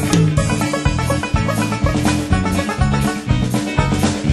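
A live band of drum kit, electric guitars and violin playing an instrumental passage of an upbeat song with a steady drum beat.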